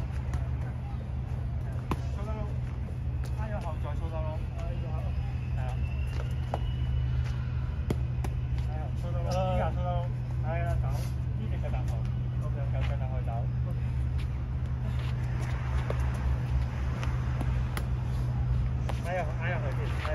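A steady low rumble runs throughout, with faint talking off and on. Now and then there is a short sharp smack of a boxing glove on a paddle mitt.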